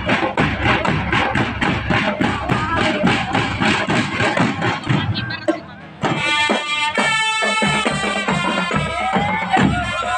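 Drumband music: a steady drum beat of about four strokes a second. Just before six seconds it drops off briefly, then comes back with a melody playing over the drums.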